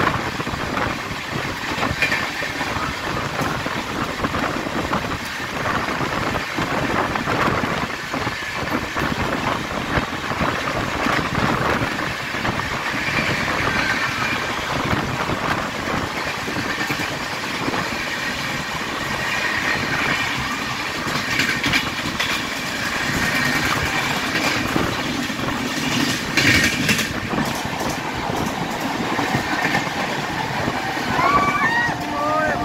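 Electric multiple unit (EMU) local train running at speed, heard from its open doorway. There is a steady rumble, with wheels clattering over the rail joints, and an express train runs alongside on the next track.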